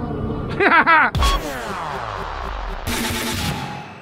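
An electronic music sting for a logo. About a second in it hits hard and a long falling sweep follows, then a burst of noise about three seconds in, and the whole thing fades out near the end.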